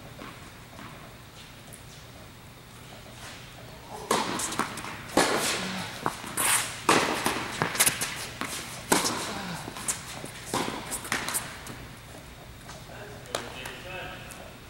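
Tennis rally on an indoor hard court: sharp pops of the ball coming off racket strings and bouncing on the court, about one or two a second, starting about four seconds in and stopping around eleven seconds.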